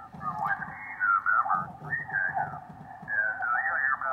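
Single-sideband voice from the Yaesu FTdx5000MP HF receiver on its speaker, squeezed through a 1.5 kHz DSP width with positive shift, so it sounds thin, with its top cut off near 2 kHz and little bottom end.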